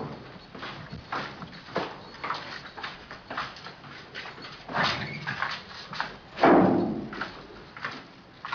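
Footsteps on a hard corridor floor, about two steps a second, with two louder sounds about five and six and a half seconds in.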